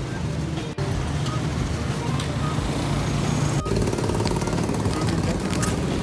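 Street noise with road traffic and indistinct voices.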